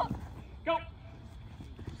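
Quick running footsteps of several players sprinting on artificial turf.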